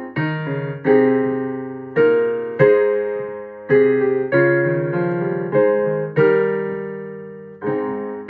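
Casio digital piano playing a slow hymn tune in block chords, each chord struck and left to fade before the next.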